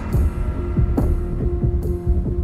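Low throbbing pulses of a dramatic TV underscore, about three a second over a deep rumble, with a steady held tone joining partway through.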